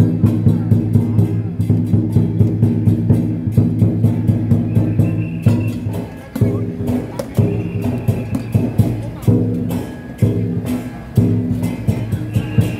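Lion dance percussion: drum, gong and cymbals beaten in a fast, steady rhythm with sharp clashing strikes over a low ringing tone. About six seconds in the beat briefly drops, then resumes in shorter phrases.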